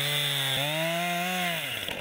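Two-stroke chainsaw running at high revs while cutting into a tree trunk near its base. Its pitch dips briefly about half a second in, rises again, then falls away as the saw slows near the end.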